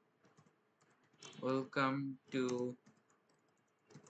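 Keys typed on a computer keyboard, light scattered clicks as a line of code is entered. A man's voice speaks a few words over it in the middle, louder than the typing.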